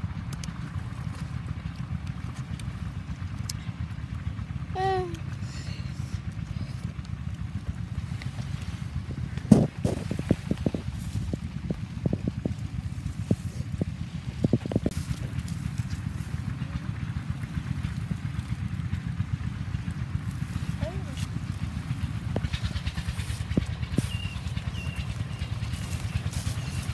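Pepper stems snapping and leaves rustling as chilli peppers are picked by hand: a run of sharp snaps over several seconds, the first the loudest, over a steady low rumble.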